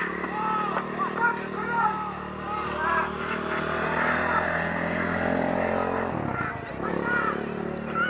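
A motor vehicle running by, its steady engine note dropping away about six seconds in, over voices and short chirping calls.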